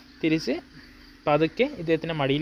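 Speech only: a voice talking in short phrases with brief pauses, in Malayalam.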